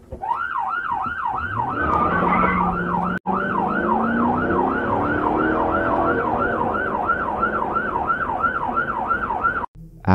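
Police car siren on its fast yelp setting, sweeping up and down about three times a second, with a brief dropout about three seconds in; it cuts off suddenly just before the end. Underneath, a lower tone rises for a few seconds as the patrol car's engine picks up speed.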